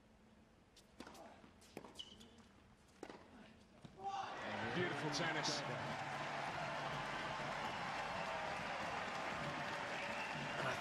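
A tennis rally: sharp racket strikes on the ball roughly a second apart, soft against a quiet hall. About four seconds in, the point ends and the home crowd breaks into loud cheering, shouting and applause that carries on.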